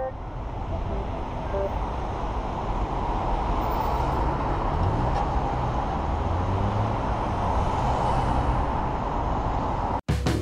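Urban road traffic: a steady rumble of passing vehicles, with one engine rising in pitch about four to five seconds in and then holding.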